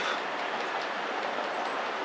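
Steady, even outdoor background hiss on an open ground, with no distinct events.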